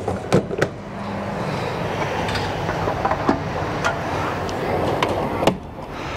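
Fuel station petrol pump running with a steady hum and hiss, with a few sharp clicks near the start and a clunk near the end.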